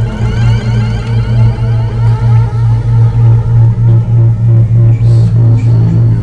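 Electronic music: a low synthesizer bass note pulses about three times a second under rising, glitchy streaks of higher sound.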